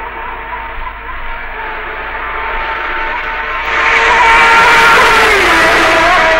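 Honda six-cylinder racing motorcycle engine at high revs, a high, steady wail. It grows louder about four seconds in, then its pitch drops near the end.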